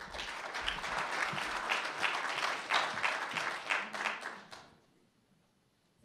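Audience applauding, dying away about four and a half seconds in.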